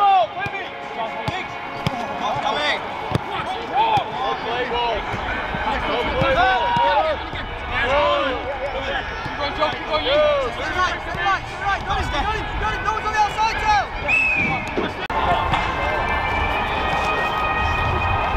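Footballers calling and shouting to one another during a passing warm-up on grass, with scattered sharp thuds of balls being kicked. About fifteen seconds in the sound changes to a steadier background.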